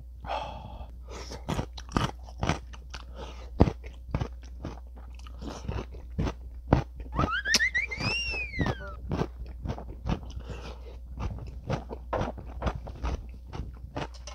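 Close-up crunching and chewing of pickled radish cubes (chicken-mu), with many sharp crisp bites. A short pitched sound that rises and then falls comes a little past halfway.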